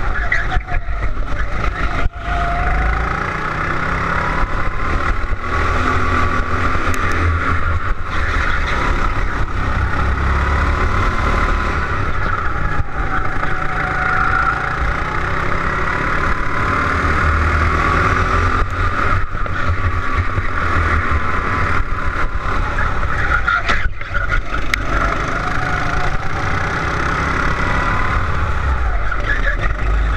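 Go-kart engine heard from on board the kart, its pitch rising and falling again and again as it revs out on the straights and drops for the corners, over a steady low rumble.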